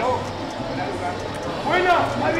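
A man's wordless vocal reaction, a voice gliding in pitch near the end, over a steady low background hum.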